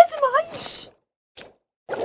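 A woman's voice makes a short, pitched vocal sound that bends up and down, followed by a brief breathy hiss and a pause. Right at the end, the bubbling of water coming to the boil begins.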